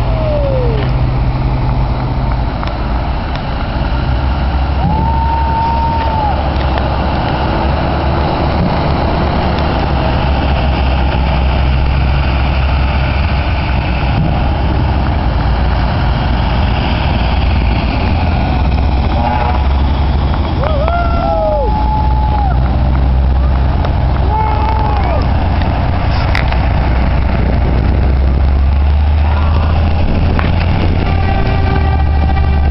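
Heavy truck engines running low and steady as a fire engine, an ambulance and a dump truck pass close by, with a few short rising-and-falling tones over the rumble.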